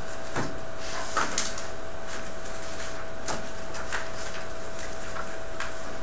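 Steady room hiss with a faint steady hum, and a handful of light clicks and knocks scattered through, from something being handled.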